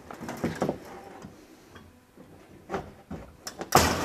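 Scattered knocks and clatter from the wooden engine crate being worked open by hand, ending in one loud, sharp knock.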